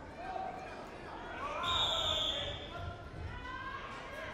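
Referee's whistle blown once for about a second, near the middle, over raised voices in the hall. A few dull thuds on the wrestling mat come during and after it.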